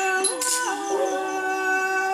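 A woman's voice in Thai classical singing, holding long notes that bend and glide between pitches in melismatic ornaments.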